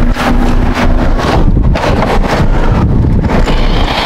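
Wind buffeting the microphone as a loud, uneven low rumble, with scattered knocks and rustles from the camera being handled.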